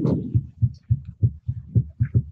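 A quick, regular series of dull low thumps, about four a second, picked up by the microphone.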